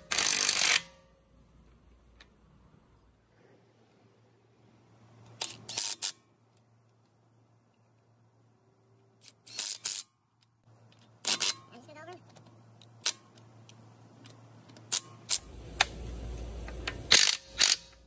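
Impact gun running lug nuts onto a car wheel in several short bursts a few seconds apart, following a diagonal tightening pattern. A faint low steady hum sits underneath.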